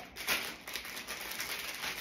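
Crinkly packaging rustling as it is opened by hand, a continuous run of small crackles, slightly louder about a third of a second in.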